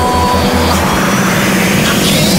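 Background hip-hop music: pulsing bass notes under a swelling whoosh of noise that rises in pitch near the end.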